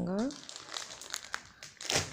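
Clear plastic packaging around folded cotton churidar material crinkling as it is handled: irregular crackles, with a louder burst near the end.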